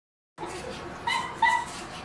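Two short, high, dog-like yips, about a second in and again half a second later, over a low room background.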